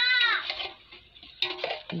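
Children's voices in the background: a short high-pitched call at the start, a quiet stretch, then more voices near the end.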